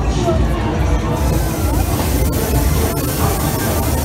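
Loud fairground ride music with heavy bass and an announcer's voice over the PA. About a second in, a steady hissing spray starts: the ride's smoke jet blowing.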